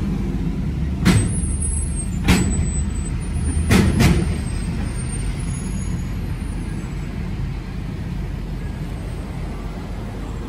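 Pickup truck towing a loaded trailer creeping onto a truck scale: three heavy clunks, the last about four seconds in, as the wheels roll onto the scale platform, over a steady low rumble. The truck is an electric-converted Ford F-150, so there is no engine note.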